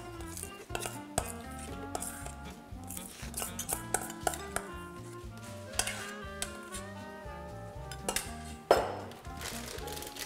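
Spoons and utensils clinking and tapping against glasses and bowls, a scatter of sharp clicks with a stronger knock near the end, over light background music.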